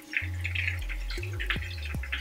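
Fish frying in a pan of hot oil, sizzling with an irregular crackle, over background music with a low, stepping bass line.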